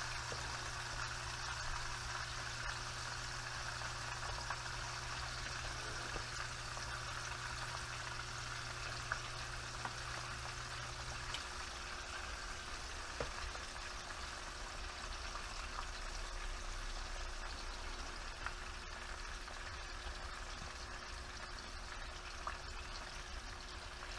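Chicken wings frying in a skillet of hot oil and melted butter: a steady sizzle with an occasional small pop as more wings are laid into the pan.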